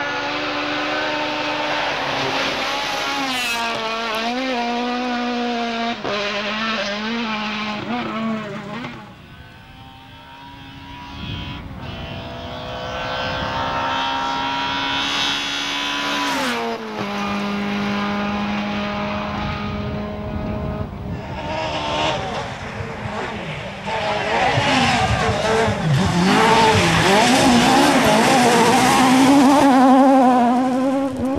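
Kit-Car and S1600 class rally car engines at full throttle on stage runs, pitch climbing and dropping back at each gear change. It dips quieter about a third of the way in, then an engine rises again. The loudest stretch is the last several seconds, as a car passes close.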